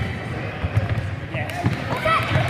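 Children's indoor football on a wooden sports-hall floor: thuds of the ball being kicked and of running feet, with children's voices echoing in the hall.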